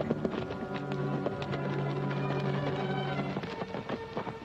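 Orchestral film score with horses' hoofbeats clattering through it.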